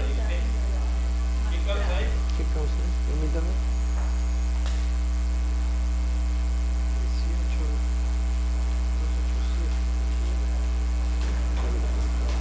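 Steady electrical mains hum with a stack of overtones, loud and unchanging on the audio feed. Faint indistinct voices come through briefly a couple of seconds in and again near the end.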